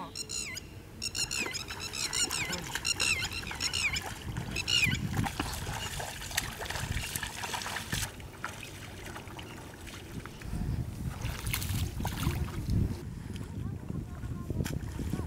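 A bird chirps in a quick run of repeated high calls over the first few seconds. After that come splashing and sloshing of feet wading through a flooded rice paddy.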